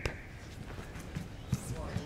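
Faint arena room noise during a pause in the commentary, with a few soft knocks about a second and a half in.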